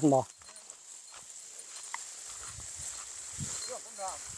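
A man's voice finishing a few words at the very start, then faint, irregular footfalls and rustling as a small herd of cattle and the person following it walk over dry rice stubble.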